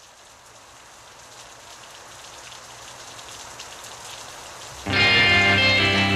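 Steady rain that fades in, growing gradually louder. About five seconds in, loud guitar-led music starts abruptly over it.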